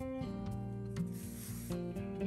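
Background music with held notes, and a soft rasping rub about a second in as the wool yarn is drawn through the jute canvas.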